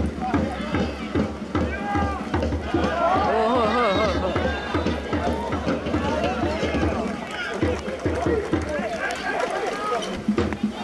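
Footballers' voices shouting on the pitch, several overlapping and loudest about three to five seconds in, with no clear words, over repeated low thumps.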